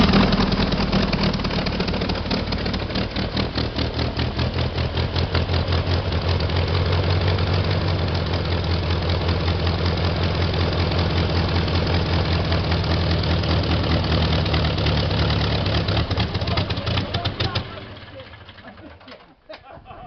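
Polaris air sled's engine running at a steady speed and driving its propeller, with a fast even pulse. About eighteen seconds in it dies away and stops, having run out of its shot of starting fluid.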